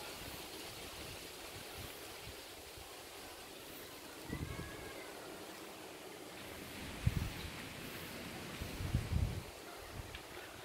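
Outdoor ambience: a steady soft hiss of wind, with brief low rumbles of wind buffeting the phone's microphone about four, seven and nine seconds in.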